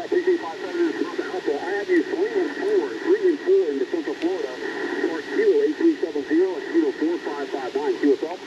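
A distant amateur radio operator's voice received on an Icom IC-705 transceiver and played through its speaker: thin, narrow-band speech over hiss, the other station's reply during a contact.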